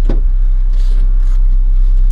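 Steady low rumble inside a car's cabin, typical of the engine idling with the car stopped, with one short click just after the start.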